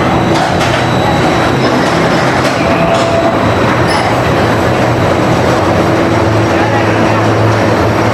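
Roller coaster train rolling along the station track: a steady rumble of wheels and running gear with a low hum and a few faint clicks.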